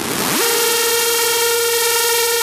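Hardstyle electronic dance music: a buzzy synthesizer note sweeps up in pitch in the first half-second and then holds one long steady tone.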